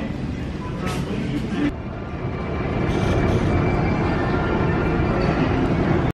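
Rattling rumble of a shopping cart's wheels rolling over a grocery store floor. About two seconds in it changes to the steady rumble of a running escalator, with indistinct voices in the background.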